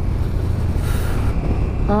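Riding noise from the KTM 1290 Super Duke GT at road speed: a steady low rumble of the V-twin engine and wind on the helmet-side microphone, with a brief rush of wind hiss about a second in.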